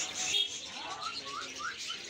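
Many small caged finches and canaries chirping together in a steady, busy chatter, with three short rising calls about a second in.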